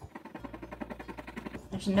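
A coin scratching the coating off a scratch-off circle on a paper challenge sheet: fast, rapid back-and-forth scrapes, roughly a dozen a second, stopping just before the end.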